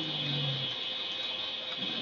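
Steady hiss of the recording's background noise, with a low steady hum that stops under a second in.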